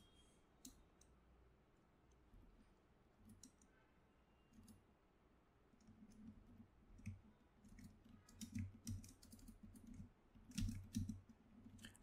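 Faint keystrokes on a computer keyboard: a few scattered clicks at first, then coming more often in the second half.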